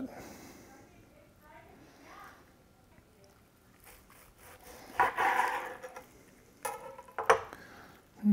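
A long slicing knife sawing through a smoked brisket's crusty bark on a plastic cutting board: a short scraping cut about five seconds in, then two sharp knocks as the blade meets and is set down on the board.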